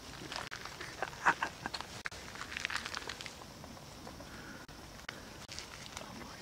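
Footsteps rustling and crackling through undergrowth, with a cluster of sharp snaps over the first three seconds and quieter rustling after that.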